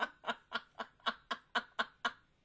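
A woman laughing in a steady run of short bursts, about four a second.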